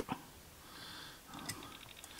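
Faint sniff through the nose, then a small click and a quick run of tiny ticks from fingers handling a 1:64 die-cast model car.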